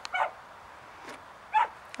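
A dog barking from inside a car: a few short barks, one near the start and another about a second and a half in.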